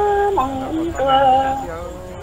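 A single voice singing kwv txhiaj, Hmong sung poetry, unaccompanied, in long held notes that jump from pitch to pitch, growing softer near the end.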